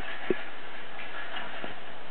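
A few short, soft knocks over a steady hiss: two close together at the start and one more past halfway.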